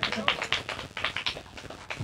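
Scattered hand clapping from a small audience, a quick irregular patter of claps that thins out and fades toward the end.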